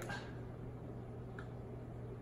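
Quiet room tone with a low steady hum, and a single faint tick about one and a half seconds in.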